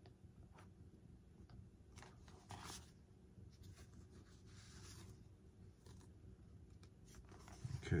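Faint handling noises of fingers working a silicone LED base into a foam model-jet tail fin: light clicks and scrapes, with a short rustle about two and a half seconds in and a soft hiss near five seconds.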